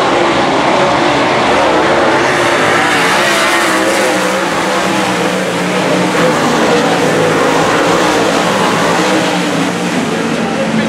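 Several dirt late model race cars' V8 engines running hard around the track, the engine notes rising and falling as the cars pass and get back on the throttle.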